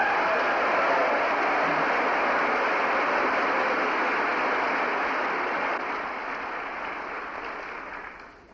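Large audience applauding: steady clapping that starts at once and dies away near the end.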